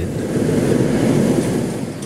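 Hot-air balloon's propane burner firing to gain height: a loud, steady rush of noise that eases slightly near the end.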